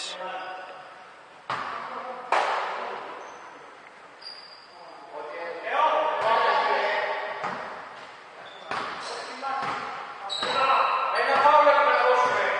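Basketball bouncing on a hardwood gym floor, a few sharp knocks that ring in the large hall, with voices calling out in the gym, loudest about six seconds in and near the end.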